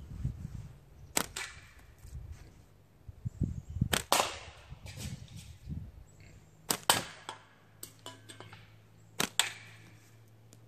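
A tube-banded slingshot shot rapidly, about four shots some two and a half seconds apart. Each is a sharp snap of the bands, and the later ones are followed a fraction of a second after by a second crack as the ammo strikes a can or the target.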